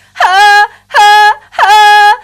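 A woman sings three short sustained vowel notes as a vocal-technique demonstration. Each note starts with a quick pitch break, a shortened flip between chest and head register placed at the start of the sound, before settling on a steady pitch.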